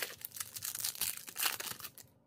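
Trading cards being handled and shuffled by hand: irregular rustling and flicking of card stock, loudest about one and a half seconds in.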